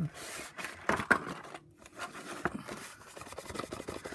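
Stiff cardstock pieces being pressed down, rubbed and shifted by hand against the craft board, a scraping rustle of card with a few sharp taps, the loudest about a second in.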